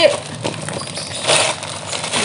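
Gift wrapping paper being torn and crinkled off a box by hand, with one louder rip about a second and a half in.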